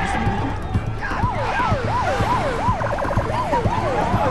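Emergency siren in a fast up-and-down yelp that comes in about a second in, over film music with a steady pulsing low beat.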